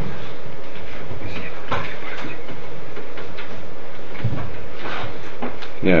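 Steady background rumble and hiss of the room, with a few soft clicks and faint murmured voices.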